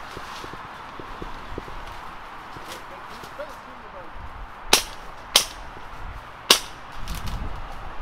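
Three sharp, loud cracks: two about two-thirds of a second apart, then a third about a second later.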